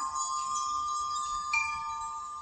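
Soft background music of sustained, ringing chime tones, with a new tone sounding about three-quarters of the way in.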